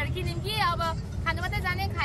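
A woman's voice over the steady low rumble of a moving auto-rickshaw, the three-wheeler's engine and road noise heard from inside its open passenger cabin.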